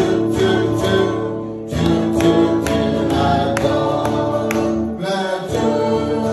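A mixed group of adults singing a song together, holding long sustained notes over an accompaniment that keeps a steady beat.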